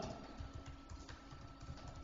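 Quiet meeting-room tone with a few faint, light clicks.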